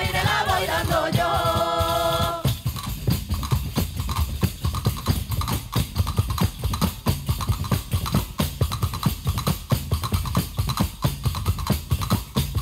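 Several voices singing together in close harmony, accompanied by hand-held frame drums and tambourines. About two and a half seconds in the singing stops and the frame drums and tambourines carry on alone in a steady, dense rhythm.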